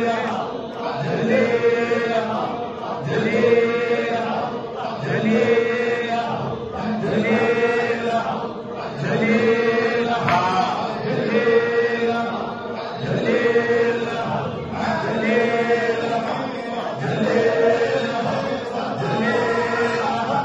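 A group of men chanting a dhikr phrase together, repeated over and over in an even rhythm, about one cycle every two seconds, with a held tone under the phrases.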